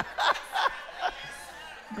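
A man laughing: a few short bursts of laughter in the first second, dying down after that.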